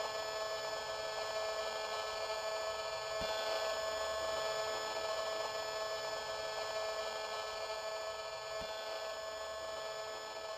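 Steady electronic buzz and hiss with a set of constant tones, from a radio-frequency detector's speaker turning a mobile phone mast's microwave emissions into sound; it runs on without stopping.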